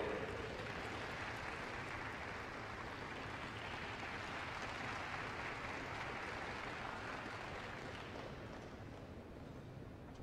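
Sparse audience applause echoing in an ice arena, slowly dying away as the skating couple settles into their starting pose.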